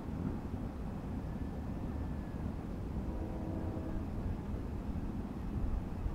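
Wind rumbling on the microphone, steady and low. A faint hum of a few tones comes and goes about three seconds in.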